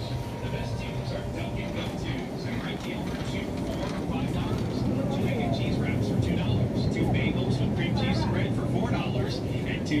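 Supermarket ambience: indistinct voices over a steady low hum from refrigerated display cases, growing a little louder about halfway through.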